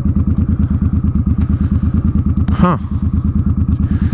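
Suzuki Boulevard M50's V-twin engine running at low revs through aftermarket Vance & Hines exhaust pipes, a steady, evenly pulsing low note.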